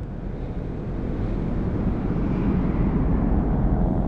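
Steady low rushing rumble that slowly grows louder.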